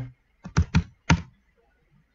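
Computer keyboard typing: four quick keystrokes in a little over half a second.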